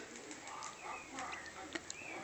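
Faint bird calls, including dove-like cooing and a few short chirps, with a few soft clicks, the sharpest near the end.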